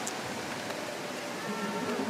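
Steady hiss of indoor pool-arena ambience, with faint voices rising near the end.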